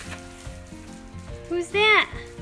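Thin plastic shopping bag crinkling and rustling as hands rummage inside it and pull out a boxed toy, with a short child's vocal sound near the end.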